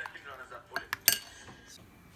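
Utensil clinking against a bowl while batter is stirred, with a few sharp clinks that ring briefly about a second in, over soft mixing noise.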